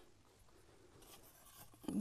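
Near silence: quiet room tone with faint rustling and light knocks of small items handled on a shelf as a small cup is picked up.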